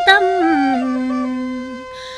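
A singer in Tày Then folk style sings the syllable "tâm" and draws it out into one long held note that steps down in pitch and fades out, over a quiet sustained accompaniment tone.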